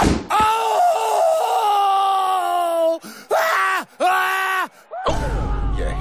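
A cartoon thud as a character falls flat on his face, then a long, slightly falling groan of pain and two short pained cries. Stadium crowd noise comes in near the end.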